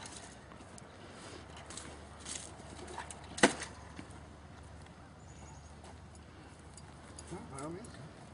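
A long-handled tool knocking and prying at a laptop lying on the ground: a few light clicks and knocks, then one sharp, loud clack about three and a half seconds in.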